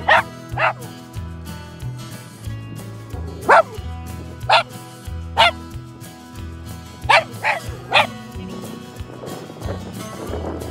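A dog barking in short, sharp barks, eight in all in three bunches, over background music.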